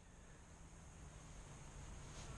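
Near silence: a faint steady hiss with a low hum underneath.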